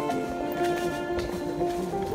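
Background music: a melody of held notes that change pitch every fraction of a second.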